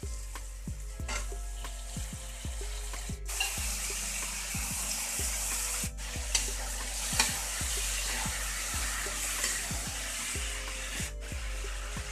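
Frying in a metal kadhai as raw potato cubes go into the hot oil and spiced onions: the sizzle swells sharply about three seconds in and carries on, while a metal spoon scrapes and clicks against the pan as the potatoes are stirred in.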